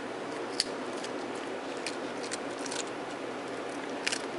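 A few sharp clicks over a steady background hiss: a small dog's teeth on a hard bone-shaped dog biscuit as it mouths and drops it. The loudest click comes about half a second in, and a few weaker ones follow around two to three seconds in.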